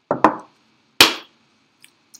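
Two short knocks about a second apart: a quick double knock, then a sharper single one that dies away briefly.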